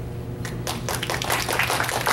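Audience applauding, starting about half a second in and quickly building to dense clapping.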